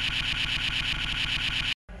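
Remix stutter effect: a split-second snippet of audio looped rapidly, many times a second, into a steady buzzing drone that starts and cuts off abruptly.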